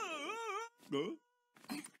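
Cartoon woman's long falling scream, a high wavering yell that cuts off under a second in, followed by a short vocal sound and a brief noisy burst.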